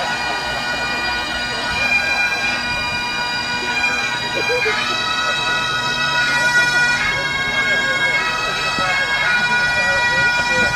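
Massed Highland bagpipes playing a tune together, the chanter melody stepping from note to note over the steady drones.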